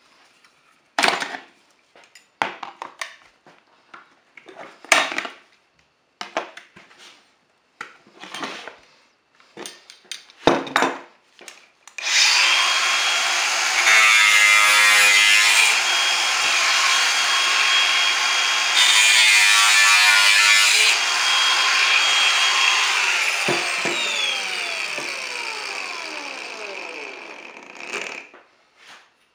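About a dozen seconds of separate sharp knocks and clicks as metal hand tools (locking pliers and a steel bar) are handled on the panel edge. Then a small angle grinder with a thin cutting disc starts and runs steadily, biting into the aluminum composite panel's edge twice, and winds down with a falling whine.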